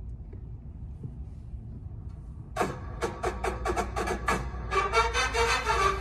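A low steady hum, then about two and a half seconds in band music starts with a quick run of sharp accented hits, which gives way to held chords near the end.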